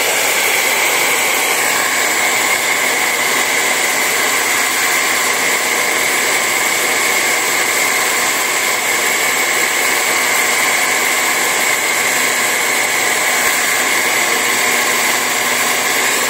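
Handheld hair dryer running steadily on its hottest setting, an even rush of air with a steady high whine, blowing on a vinyl sticker to soften its adhesive for peeling.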